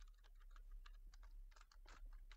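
Faint typing on a computer keyboard: irregular key clicks, several a second, over a low steady hum.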